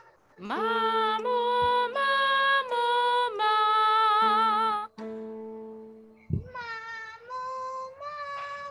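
A woman singing a vocal warm-up exercise: a few held notes, the last one with vibrato, over steady held accompaniment tones. After a short gap, a second, quieter sung phrase begins about six and a half seconds in.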